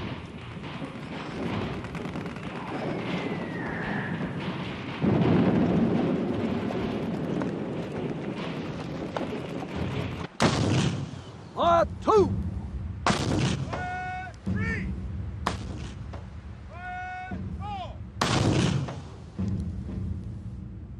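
Artillery bombardment: a continuous rumble of shellfire that grows louder about five seconds in, then four loud shell blasts in the second half. Short pitched cries of a voice come between the later blasts.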